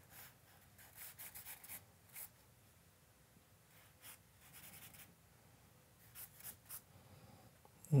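Compressed charcoal stick scratching on drawing paper in short, quick shading strokes. The strokes come in clusters with brief pauses between them.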